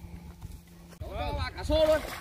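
A person's voice: a short call about a second in that rises and falls, then holds one pitch, after a second of quieter low rumble.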